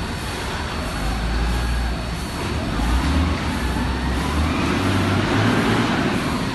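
Belt conveyor machinery for granular fertilizer running, a steady low rumble under broad mechanical noise that grows louder about halfway through.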